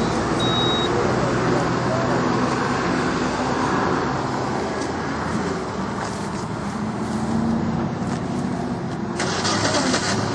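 A motor vehicle engine idling steadily, with roadside traffic noise. A short high beep comes about half a second in.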